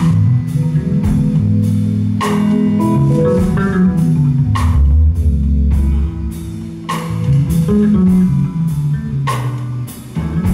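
Live band playing an instrumental passage: electric guitar lines over bass guitar and drum kit. A sharp drum hit lands about every two and a quarter seconds, with lighter strokes between.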